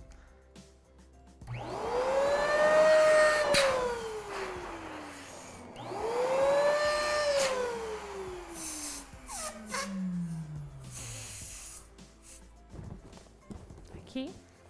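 Electric balloon inflator run twice, about four seconds apart, filling latex balloons. Each time the motor whines up quickly and runs for a second or two. After that it winds down in a long falling whine.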